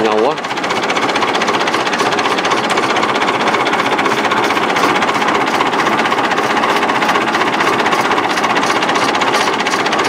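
Massey Ferguson 165 tractor engine running steadily at a constant low speed, with a rapid, even ticking pulse.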